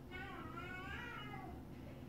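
One long drawn-out cry, rising and then falling in pitch, lasting about a second and a half.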